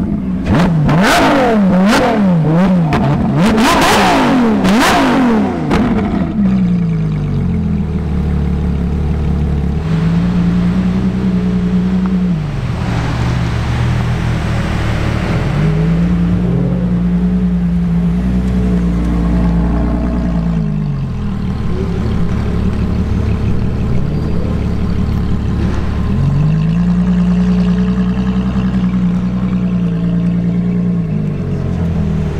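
Ferrari LaFerrari's V12 through a valveless exhaust, blipped hard about ten times in quick succession for the first six seconds. It then settles to a steady idle that steps up and down in pitch a few times.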